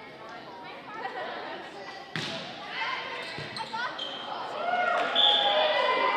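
A volleyball struck once sharply about two seconds in, echoing in a gymnasium, with a lighter ball impact about a second later. Spectator chatter runs throughout and grows louder in the second half, where a brief high-pitched tone also sounds.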